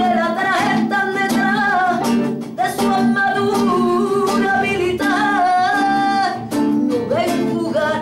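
A woman singing a song in long, wavering phrases over a strummed acoustic guitar, with a violin playing along.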